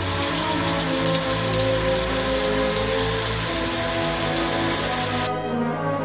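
Water spraying steadily from an overhead bucket-style shower head, a dense hiss that cuts off suddenly near the end. Background music with held notes plays underneath throughout.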